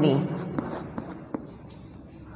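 Chalk writing on a chalkboard: a handful of sharp taps and light scratches as the chalk strikes and drags across the board, clustered in the first second and a half.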